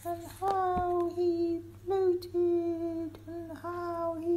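A voice drawing out its syllables into held, nearly level notes, a string of about half a dozen in a sing-song chant, more like singing than ordinary speech.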